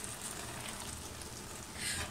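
Shrimp sauce simmering in a wok, a faint steady sizzle, as thick cassava cream is poured in on top.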